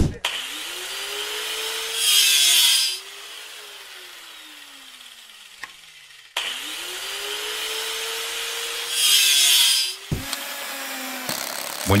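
Handheld angle grinder spinning up with a rising whine, then a loud harsh grinding burst lasting about a second, then winding down with a falling whine as it coasts. The same sequence plays again from about six seconds in.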